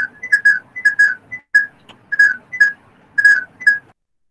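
A run of short, high whistled notes, about three a second, each dipping slightly in pitch. It cuts off abruptly just before the end.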